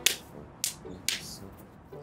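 Bare hands slapping and clapping together in a multi-move handshake: three sharp slaps in the first second or so, about half a second apart.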